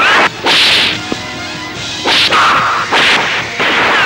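Dubbed fight sound effects: a rapid run of sharp whip-like punch cracks and whooshes, about five or six in four seconds, ending in a falling whistle-like swoosh.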